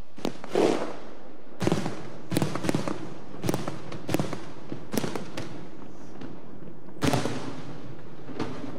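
Aerial firework shells bursting in a run of sharp bangs, some in quick clusters of two or three, each followed by a short lingering tail. The loudest come near the start and about seven seconds in.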